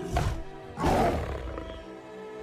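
Giant ape's roar, designed for the film's Kong, over an orchestral score: a short roar just after the start, then a longer, louder one about a second in.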